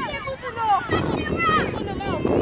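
Children's voices chattering and calling out, with wind buffeting the microphone.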